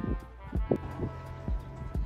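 Background music with sustained notes, over a run of dull footfalls on a hard floor, about two a second, as someone walks briskly or jogs.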